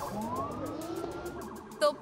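Police siren wailing, its pitch rising smoothly over about a second and a half.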